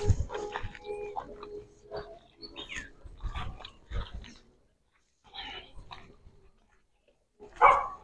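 An animal calling in irregular short cries, with one longer held call in the first two seconds and the loudest cry near the end.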